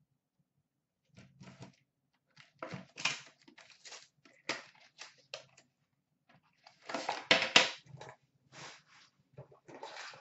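Cardboard box being opened by hand and a metal card tin slid out of it and set down: a string of short rustles and scrapes, loudest about seven seconds in.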